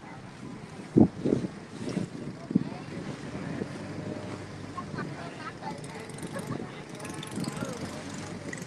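Small tourist boat under way on a river: engine and water noise with wind buffeting the microphone, and a few loud thumps about a second in.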